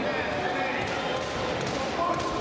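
Crowd of spectators and coaches calling out and chattering in a steady hubbub, with a few short sharp slaps from the wrestlers hand-fighting on the mat.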